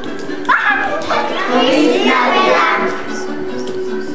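A group of young children's voices singing and calling out together over music, with a sharp rising shout about half a second in and a held sung note near the end.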